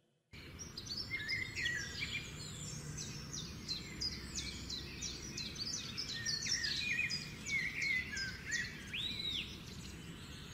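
Several small birds chirping and singing in quick, mostly falling notes over a steady low background noise, starting suddenly out of silence.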